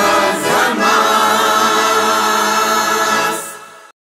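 Women's choir with accordion singing the last words of a Russian song, then holding the closing chord for a few seconds. The chord fades out near the end and cuts off.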